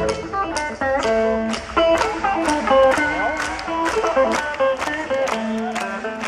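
A live rock band playing an instrumental passage: plucked guitar notes over a steady drumbeat, heard from within the audience.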